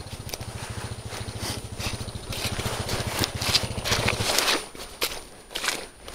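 A 450cc enduro motorcycle's engine running at low revs in an even pulsing beat, with scattered cracks and knocks from brush and ground under the bike; the engine beat drops away a little over four seconds in.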